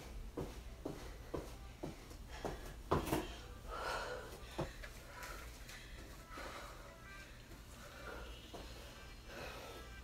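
Sneakers thudding on a yoga mat in a quick rhythm during mountain climbers, about two or three a second, ending with a heavier thump about three seconds in as the exercise stops. Then heavy panting breaths from the exertion.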